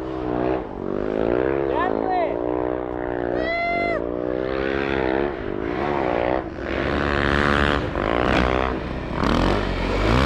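Snowbike engine revving up and down over and over as the bike rides through snow, with a couple of short high-pitched shouts about two and three and a half seconds in.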